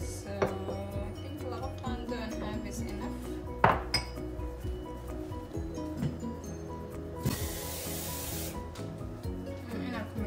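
Background music, with a metal spoon clinking against a small ceramic bowl a few times, the loudest clink nearly four seconds in. A burst of hiss lasting over a second comes about three-quarters of the way through.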